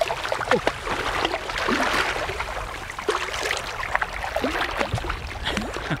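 Water splashing and sloshing around a small boat as a hooked fish is played and landed, with irregular knocks and handling noise.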